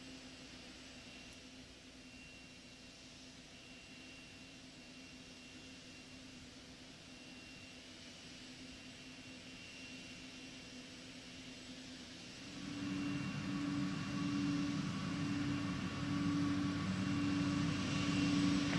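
Launch-pad ambience around the fuelled Space Shuttle. A faint steady hiss runs for about twelve seconds, then a much louder steady rushing noise with a low hum comes in. This is the pad equipment and venting heard from a close pad camera.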